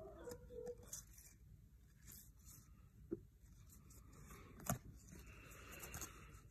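Faint sliding and rustling of Topps baseball cards as they are flipped through by hand, with a few light clicks of card edges, the sharpest shortly before the end.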